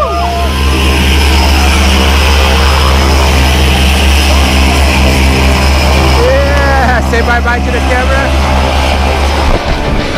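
Single-engine propeller airplane running on the ground close by: a loud, steady drone with propeller wash. A voice gives a few short shouts about six to eight seconds in.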